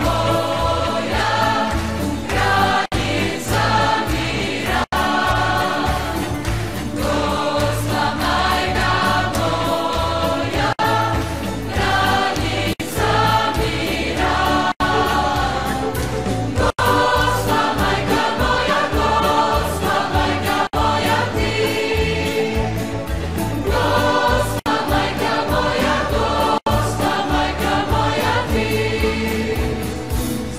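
Christian choral music: a choir singing a hymn over steady instrumental backing.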